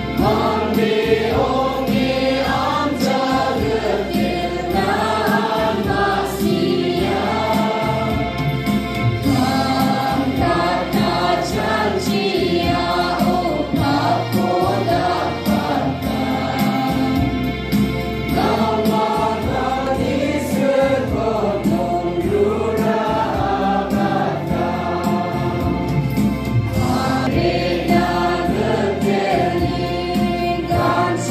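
A congregation singing a Garo entrance hymn in chorus, with a steady beat beneath the voices.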